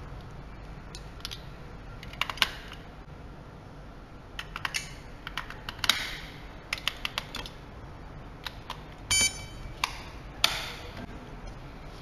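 AA batteries being pressed into the plastic battery compartment of an electronic locker lock: scattered sharp clicks and light knocks, with one short beep a little after nine seconds in.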